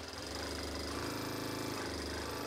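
Industrial single-needle lockstitch sewing machine running steadily as it stitches a strip of fabric.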